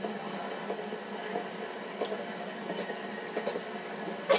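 Quiet, steady outdoor city background ambience from a TV drama's soundtrack, with a few faint short sounds over it.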